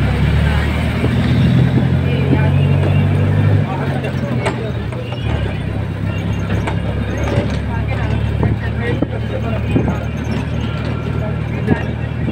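Car engine and road noise heard from inside the moving car's cabin: a steady low rumble that is heavier for the first few seconds and drops a step about three and a half seconds in.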